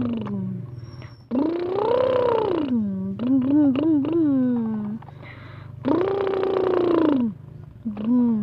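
A child's voice imitating a truck engine by mouth: shorter wobbly, stuttering revving sounds and two long held "vroom" notes that rise and then fall in pitch, the first about a second in and the second near the end. A steady low hum runs underneath.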